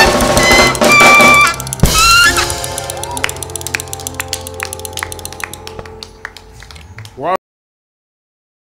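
Live band music with an alto saxophone playing a phrase, then a final full-band hit about two seconds in, after which the held chord fades away with scattered light clicks. The sound cuts off suddenly near the end.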